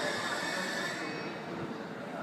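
Electric train noise on a station platform: a steady low rumble with a hiss that fades about a second in.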